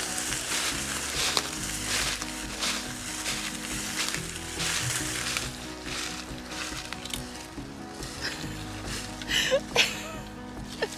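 Dry fallen leaves crunching and rustling under boots and a rolling measuring wheel, a burst of crunching with each step, over background music.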